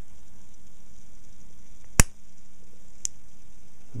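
Automatic spring-loaded dot punch firing once with a single sharp snap about halfway through, its point marking 10 mm aluminium plate. A much fainter click follows about a second later.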